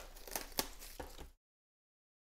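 Faint crinkling and rustling of a trading-card pack's wrapper being torn and opened by hand, with a few small clicks, cutting off suddenly a little over a second in.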